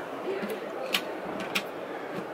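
A few short, light clicks, about half a second apart, as a hand tries the roll-top storage box, which is locked and will not open.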